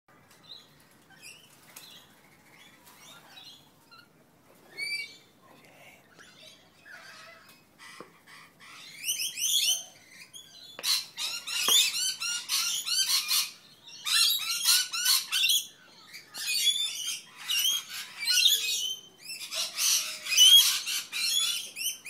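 Rainbow lorikeets calling at close range: faint scattered chirps for the first several seconds, then from about nine seconds in a loud run of shrill, rapid screeches.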